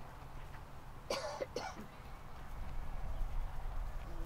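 Two short coughs, about a second and a half second apart, a little past one second in, over a steady low rumble.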